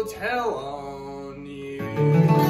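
Acoustic country string band with vocal harmonies. A sung note bends near the start, then the voices and strings ring out more quietly, before the guitars strum back in loudly near the end.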